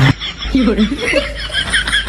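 A person snickering, with quick short laughs repeated in an even run.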